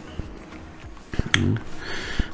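A pause with a few small clicks and taps of hands handling a plastic model car seat, the sharpest a little over a second in, and a brief hesitation sound from a man's voice just after it.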